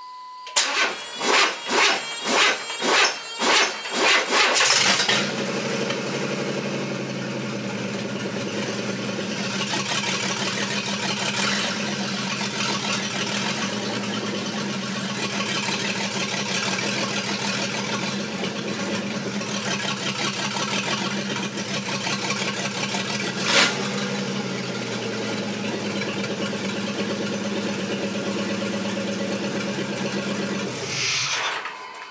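1994 Chevy S10's 4.3-litre V6 cranking in rhythmic surges about twice a second, catching about five seconds in and settling into a steady idle. A brief beep at the very start and a single sharp click a little past the midpoint.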